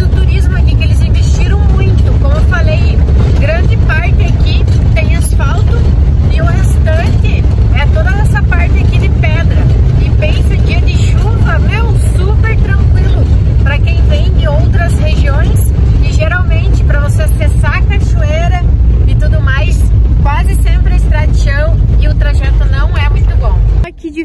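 Steady, loud rumble of engine and road noise inside a Volkswagen Kombi van's cabin while it drives, with a woman's voice over it.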